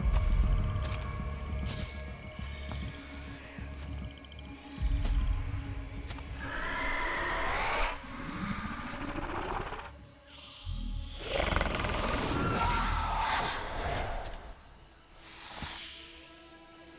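Tense film score with deep low rumbles. Twice, about halfway through and again later, come gliding, warbling calls of the film's Shrieker creatures, the sound the hunters then take for the creatures speaking to each other.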